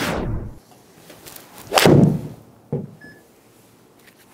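A whoosh transition effect at the start, then a golf ball struck with an iron off a hitting mat about two seconds in, the loudest sound, followed by a softer knock a moment later.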